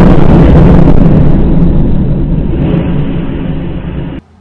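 Rocket blast rumbling on after the impact, very loud and distorted on the camera's microphone, dying away slowly before cutting off suddenly near the end.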